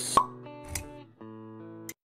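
Short intro jingle: a sharp pop sound effect, then held musical chords with a second, softer pop. The music cuts off suddenly just before the end.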